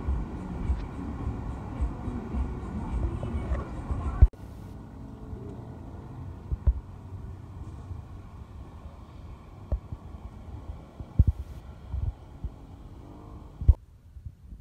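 Wind rumbling and buffeting on a phone microphone outdoors. It is heavier for the first four seconds, then drops to a lower, steadier rumble with a few sharp thumps.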